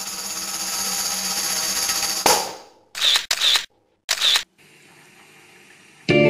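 Title-card sound effects: a shimmering, rising swell that ends in a hit a little after two seconds in, followed by three short camera-shutter clicks, then faint hiss.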